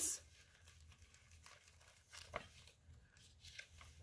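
Faint rustling of a hardcover picture book's paper pages being handled, with scattered soft rustles, the most noticeable a little over two seconds in, and a page being turned by hand near the end.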